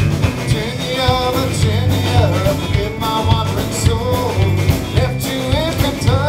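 Live rock band playing: two electric guitars, an electric bass and a drum kit driving a steady beat, with a male lead vocal singing over them.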